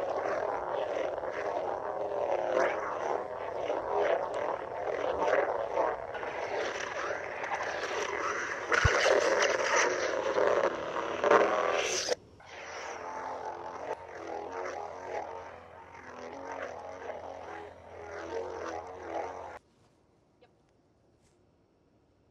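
SabersPro Revan lightsaber's Xenopixel V3 sound board playing its sound font through the hilt speaker. For about twelve seconds there is a busy run of swing and clash effects over the blade hum. Then comes a quieter, steady hum, which stops abruptly near the end as the blade is shut off.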